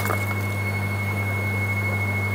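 Steady electric hum of an air compressor pumping oxygen through hoses into tanks of live seafood, with a faint high whine and an even hiss of air.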